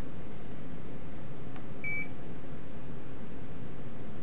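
A single short high electronic beep from the ultrasound machine about two seconds in, after a few faint clicks, over a steady low machine and room hum.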